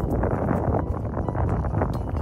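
Wind buffeting the microphone: a loud, rough, low rush with no clear tones.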